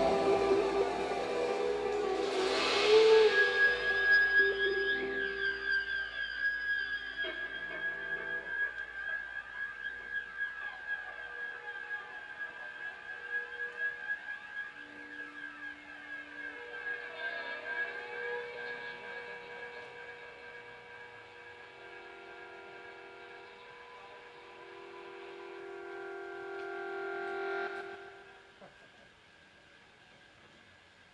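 A live band's song dying away in a long fade of held, sustained notes and effect tones, with one high steady tone running through most of it. It is loudest in the first few seconds, thins out gradually, swells once more near the end and then cuts off suddenly.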